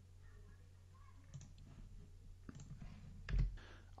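A few faint computer mouse clicks, scattered and irregular, with a louder soft low thump near the end.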